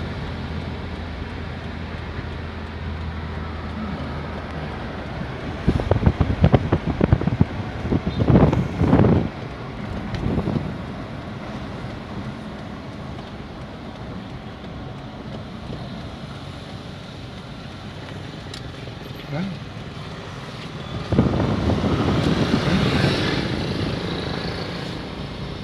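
Steady road and engine noise heard from inside a moving car, with a low hum that drops away about five seconds in. Louder irregular bursts come between about six and ten seconds in and again for the last few seconds.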